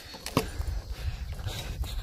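A few irregular footsteps on dry dirt strewn with dead leaves, over a low rumble.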